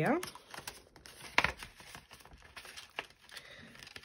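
Banknotes slid into a clear plastic binder pocket and handled: crinkling and rustling of plastic and notes, with a sharp click about a second and a half in and a smaller one near the end.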